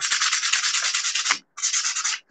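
A small piece of sandpaper is rubbed in rapid back-and-forth strokes along the edge of a thin, hard painted wooden cutout, distressing the fresh paint for a worn patina. The rasping breaks off briefly about one and a half seconds in, then starts again.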